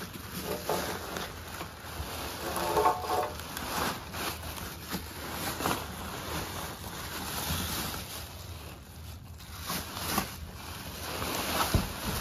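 Packaging rustling and crinkling, with scattered light clicks and knocks, as the second Hemi valve cover is unwrapped by hand.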